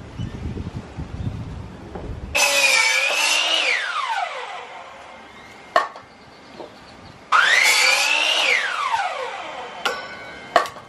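Craftsman 3 HP miter saw run twice, starting about two and a half seconds in and again about seven seconds in. Each time the motor whines high as the blade cuts through OSB board, then the whine falls in pitch as the blade spins down. Short wooden knocks come between and after the cuts, and a low rumble fills the first two seconds.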